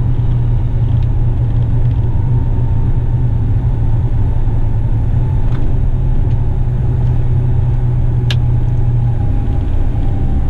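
Western Star truck's diesel engine running steadily under way, heard from inside the cab as a heavy, continuous low rumble. A faint whine slowly falls in pitch, and there is a single sharp click about eight seconds in.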